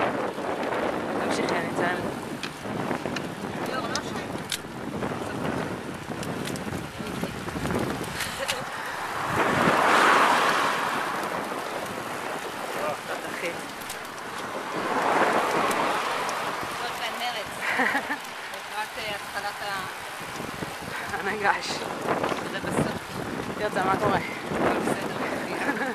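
Wind rushing over the microphone of a camera carried on a moving road bicycle, with two louder swells of rushing noise about ten and fifteen seconds in.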